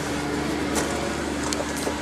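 A car's heater blower running on defrost inside the cabin: a steady rush of air with a steady low hum.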